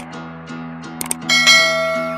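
Subscribe-button animation sound effect: a mouse click at the start and a quick double click about a second in, then a bell chime that rings out and slowly fades, over steady background pop music.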